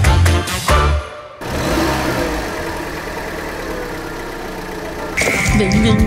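Upbeat music with a steady beat that stops about a second in, followed by the steady running noise of a car heard from inside the cabin. A high steady tone comes in near the end.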